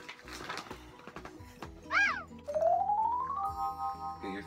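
Background music, with an edited-in sound effect: a quick up-and-down pitch glide about halfway through, then a whistle-like tone that rises steadily and levels off near the end.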